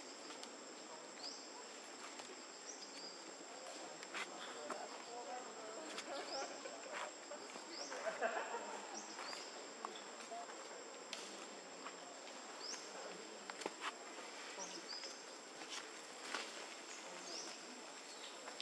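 Outdoor forest ambience: a steady high-pitched insect drone, with short rising chirps every second or two. Faint scattered clicks and a brief jumble of soft sounds about eight seconds in.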